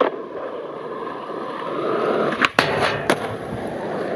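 Skateboard wheels rolling on fresh asphalt, a steady rolling noise that grows louder about halfway through. Sharp clacks of the board on the ground come at the start and again about two and a half and three seconds in.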